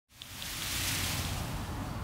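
Steady outdoor background hiss, with two faint ticks near the start.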